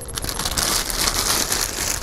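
Thin clear plastic bag crinkling steadily as a rifle scope is handled and slid out of it.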